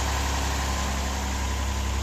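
Mercedes-Benz W111's 2.3-litre M180 straight-six, newly converted from dual carburetors to fuel injection, idling steadily at a high idle of about 1,300 rpm because it has not yet been tuned.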